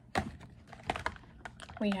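Plastic makeup compacts clicking and knocking together as they are sorted through in a basket: a handful of separate, irregular clicks.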